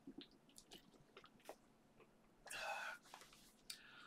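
Faint swallowing and small mouth clicks as a man drinks from a plastic water bottle, followed by a short breath out about two and a half seconds in.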